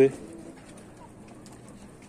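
Quiet yard with faint low bird calls in the first half second, after the end of a spoken word.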